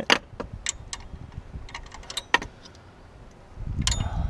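Irregular sharp metallic clicks and clinks of a wrench working on the drive-belt tensioner of a Nissan 350Z's engine bay, the wrench being turned the tightening way rather than loosening the tensioner. A low rumble builds near the end.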